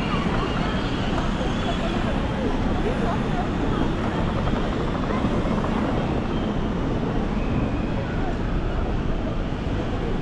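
Busy city-square ambience: a steady low rumble with indistinct chatter of passers-by throughout and no single event standing out.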